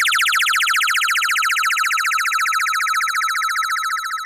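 A high electronic tone pulsing in a fast, even trill at one steady pitch, like an alarm or ringing signal, slowly fading.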